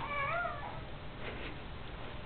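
A baby's high, wavering squeal that glides up and down and stops under a second in.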